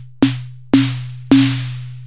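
Synthesized snare from the Kong Drum Designer's analog-modelled Synth Snare Drum module in Reason 5, hit three times about half a second apart. Each hit rings out longer than the last as its Decay knob is turned up, a noisy crack fading over a steady low tone.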